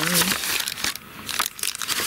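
Thin clear plastic packaging crinkling in two bouts as a small bottle in a plastic bag is picked up and handled.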